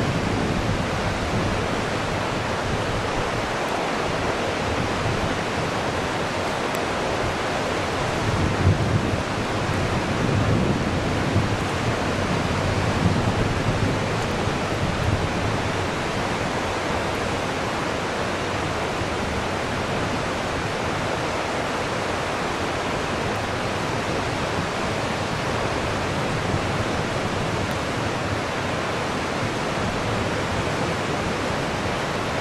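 Steady rushing of river water. A few brief low rumbles swell over it between about eight and fifteen seconds in.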